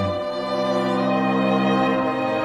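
Orchestral strings, violins over cello, holding long sustained chords in an instrumental passage. The low bass note drops out and the harmony shifts shortly after the start.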